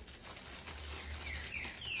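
Clear plastic gift bag rustling and crinkling as it is handled.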